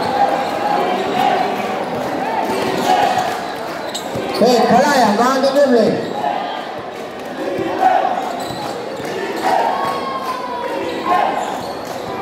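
Basketball bouncing on a concrete court during play, under a crowd of spectators shouting and talking, with a louder burst of shouting about four seconds in.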